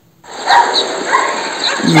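The soundtrack of a video clip in a phone video editor cutting in suddenly on playback: a loud, steady noisy wash with a few short, higher-pitched calls over it.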